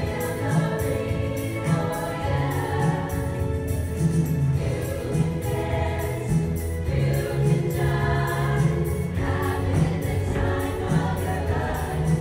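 A high school choir of mostly female voices singing a song in harmony over an accompaniment with a steady beat.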